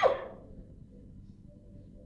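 A voice's exclamation dies away right at the start, then only a faint, even hiss of the old recording, with a faint steady tone joining after about a second and a half.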